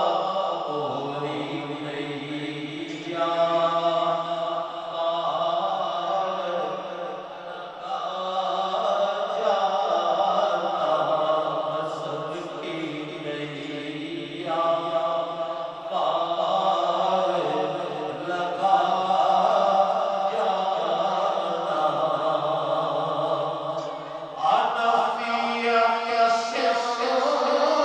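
A solo male voice sings a naat, an Urdu devotional poem praising the Prophet, through a microphone and PA. He draws out long held notes that change pitch every few seconds.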